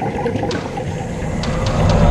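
Muffled underwater rushing and bubbling of scuba divers' exhaled air, heard through the camera housing, with a few sharp clicks.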